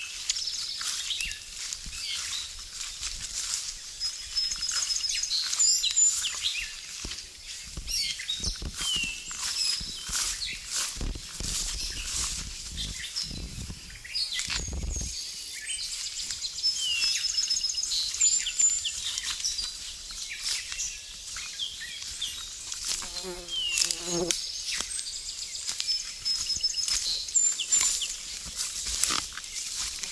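Footsteps and brush rustling through wet undergrowth, over woodland songbirds: one bird repeats a short falling note every few seconds while others give high trills and chirps.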